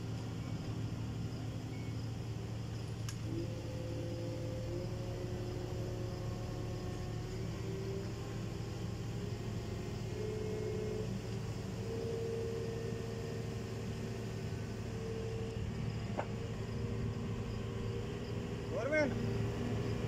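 Mobile crane's diesel engine running steadily under a tank lift, a low drone with a higher hum that steps up and down in pitch several times as the engine speed changes.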